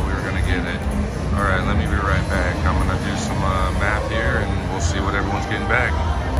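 Indistinct voices talking over a steady low rumble of casino floor noise.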